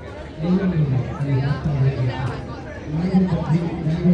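Speech: a voice talking close by, with chatter around it, starting about half a second in, pausing briefly and going on again near the end.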